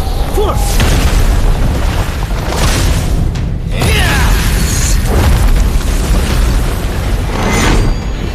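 Sound effects of a magical energy battle: heavy booming explosions over a continuous deep rumble. The sound drops away briefly about halfway, then a sudden hit comes in with falling whooshes, and it surges again near the end.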